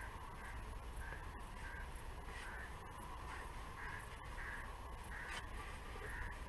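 A bird calling over and over, one short call about every two-thirds of a second, above faint steady outdoor background noise.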